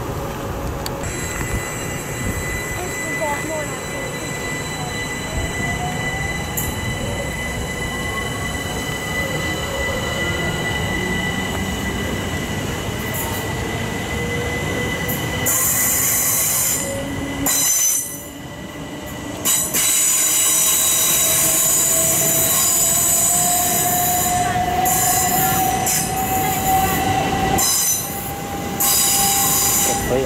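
Southeastern electric multiple unit pulling out of the station: a motor whine rising slowly in pitch as it gathers speed, with high-pitched wheel squeal setting in about halfway through and cutting in and out.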